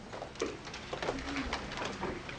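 Indistinct voices and a few light knocks and clicks from people stirring in a lecture room as a class breaks up.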